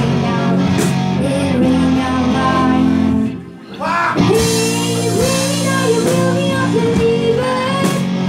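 A small live band plays a song: a woman sings into a microphone over electric guitar and drums. Just before halfway the music drops out for a moment, then the band and the singing come straight back in.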